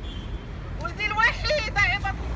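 A loud voice calling out in short phrases, starting about a second in, over a steady low rumble of outdoor background noise.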